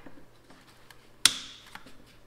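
Side cutters snipping through a fuel-line hose clamp: one sharp metallic snap about a second in that dies away quickly, then a fainter click.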